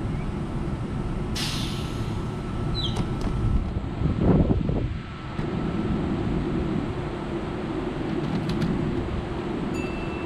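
Kintetsu 12200 series limited express train standing at the platform, its equipment humming steadily. A sharp hiss of released air comes about a second and a half in, and a louder low rumble follows around four seconds in.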